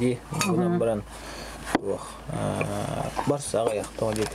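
A man talking in short phrases, with a few light clicks and clinks from his hands and one sharp click just before the middle.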